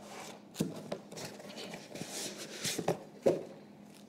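Quiet handling sounds of small spoons and glass jars, scattered light clicks and scrapes, with a few brief murmurs.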